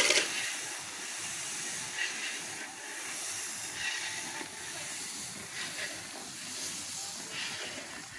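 Steady hissing and sizzling from a large iron kadhai over a wood fire, as water poured into the hot korma masala boils off in steam while a long ladle stirs it. The hiss swells a little every second or two.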